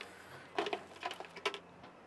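A few light knocks and rustles as a bucket on a rope lanyard is handled and set down inside a small aluminium boat.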